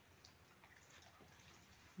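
Near silence: a faint, steady hiss of light rain falling outside, with a few faint ticks.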